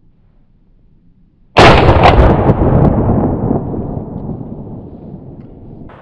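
A single shot from a JC Higgins Model 60 12-gauge semi-automatic shotgun about one and a half seconds in, with a couple of sharp clicks just after it, followed by a long rolling echo that fades away over about four seconds.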